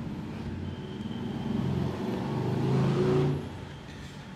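A motor vehicle's engine growing louder, then dropping away sharply about three and a half seconds in.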